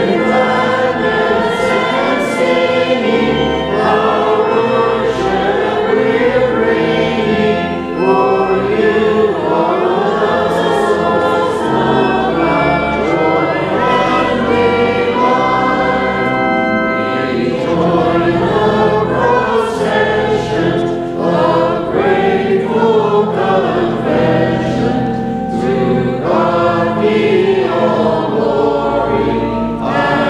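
Choir singing sacred music together, holding long notes that change every second or so, with no break.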